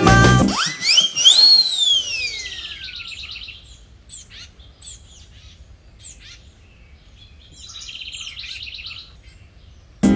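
Small birds chirping and trilling: short, high, falling chirps, with two quick trills about three seconds in and again near the end. Before them, the music breaks off and a loud whistle-like tone leaps up and then slides slowly down over about two seconds.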